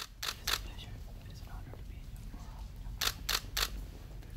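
Camera shutter clicks: two quick ones near the start and a run of three about three seconds in, over a faint murmur of voices.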